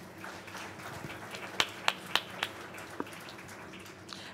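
Quiet hall room tone with a handful of sharp clicks or taps, about a third of a second apart, near the middle.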